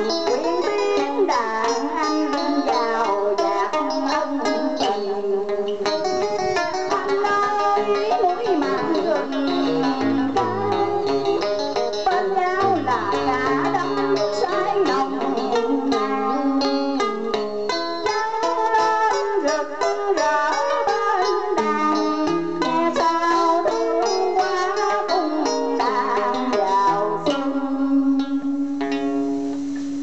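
A woman singing Vietnamese cải lương (ca cổ) through a microphone, over an accompaniment of plucked string instruments.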